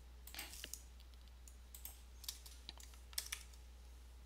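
Faint, irregular keystrokes on a computer keyboard, in small clusters of taps.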